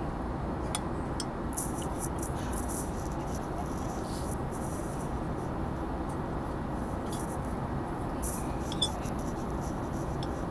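Steady airliner cabin noise, with a metal spoon scraping and clinking against a ceramic bowl as rice is mixed. One sharper clink comes near the end.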